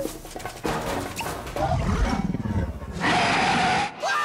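Cartoon dragon roaring: a loud roar of about a second near the end that cuts off suddenly, after softer sound effects.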